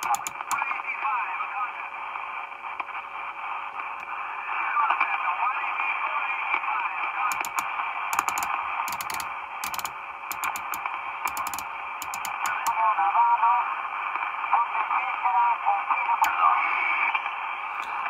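Marko CB-747 CB radio's speaker playing faint, garbled voices from distant stations buried in steady hiss, the sound thin and narrow, with a thin steady tone under it and a run of sharp clicks about halfway through. The owner finds the received audio not great and thinks the radio needs a fresh service.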